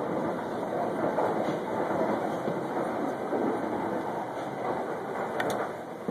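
Steady rolling rumble of a candlepin ball running back along the alley's ball-return track, with a light click near the end.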